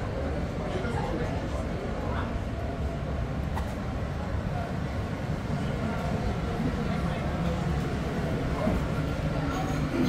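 Steady low rumble of a river cruise boat's engine under way, with passengers chatting indistinctly in the background.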